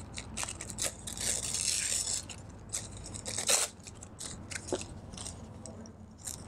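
Tissue paper and card rustling and crinkling as hands tuck a piece of tissue under a journal page, with scattered light taps and one louder crackle about three and a half seconds in.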